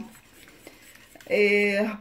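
Wire whisk beating a runny egg batter in a bowl, faint quick ticks of the whisk against the bowl. About a second and a half in, a woman's voice holds a short drawn-out vowel.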